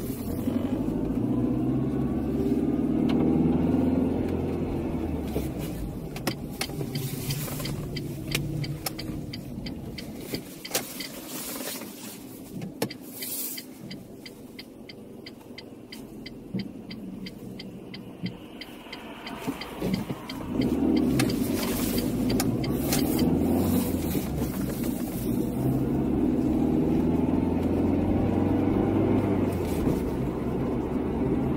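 Car engine and road noise heard from inside the cabin while driving. It is quieter through the middle, with a run of light, evenly spaced ticks, then gets suddenly louder again about two-thirds of the way through as the car picks up speed.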